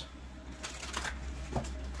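A new deck of tarot cards being shuffled by hand: soft flicks and slaps of the cards, clustered about halfway through and once more near the end.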